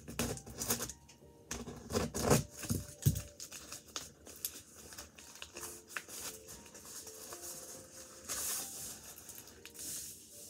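Hands working at a cardboard shipping box: scraping, rubbing and tearing sounds on the cardboard, with a few louder knocks in the first three seconds, then quieter scraping.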